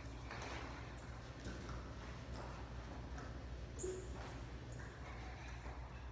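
Children scooting across a hard floor on their hands and bottoms, feet held up, giving irregular soft thumps and scuffs with a few brief high squeaks.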